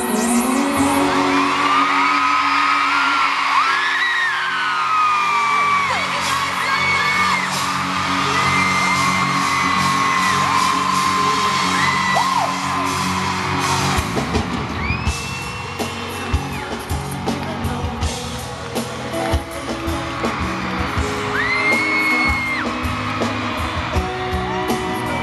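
Live pop song heard from inside an arena audience: a band and a woman's sung vocal through the PA, with long held, gliding notes. Fans nearby scream and whoop over the music, and the band fills out with a heavier beat about halfway through.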